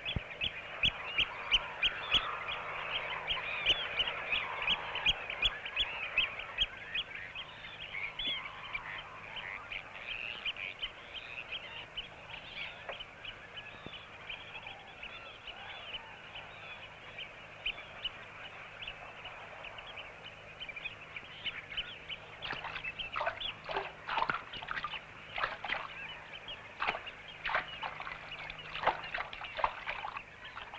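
A large flock of shorebirds calling all at once: a dense stream of short, high calls that thins out in the middle and grows busier again near the end.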